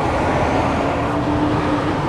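Steady street traffic noise, with a faint steady hum that runs for about a second in the middle.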